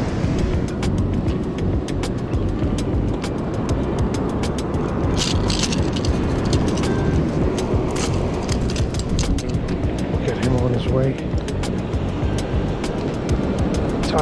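Steady low rumble of wind and surf on the microphone, with a run of sharp clicks and rattles from fishing pliers and a lure's treble hooks as they are worked free of a striped bass's mouth.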